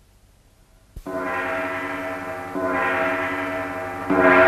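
Tibetan ritual long horns (dungchen) sounding a held low note that starts suddenly about a second in and swells again twice, the last swell the loudest.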